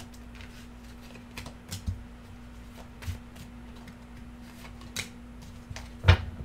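Tarot cards being shuffled and handled by hand, with soft rustling and a few sharp card snaps scattered through, over a steady faint hum.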